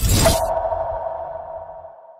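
Electronic intro sound effect: a quick whoosh and hit, then a steady ringing tone that slowly fades away.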